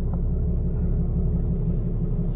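Ram 3500's 6.7-litre Cummins inline-six turbodiesel idling steadily, heard from inside the cab as a low, even rumble. A faint click comes at the very start.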